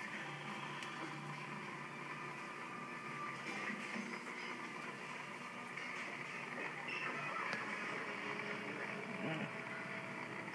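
Hang-on-back aquarium filter running steadily.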